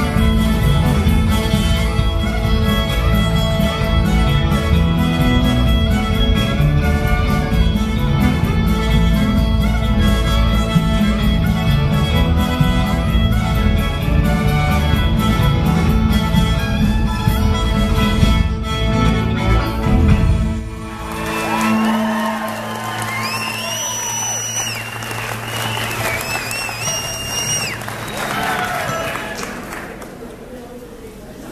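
Fiddle playing a fast contest tune, backed by bass guitar and drums, that ends about two-thirds of the way through. The audience then breaks into applause and cheers.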